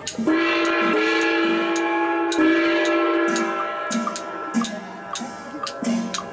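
Traditional funeral band music: a horn holds a long, loud note, shifting to another note about two seconds in and fading out near the end, over percussion strikes roughly twice a second.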